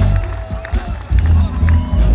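A live pop band playing through a large outdoor PA, heard from within the crowd, with heavy bass and drums and crowd voices mixed in.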